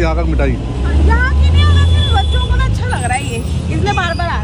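Street traffic noise with a vehicle engine rumbling close by, loudest in the middle, and voices over it.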